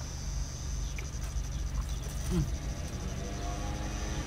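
Insects chirping in a steady, rapid high-pitched pulse, over a low steady rumble.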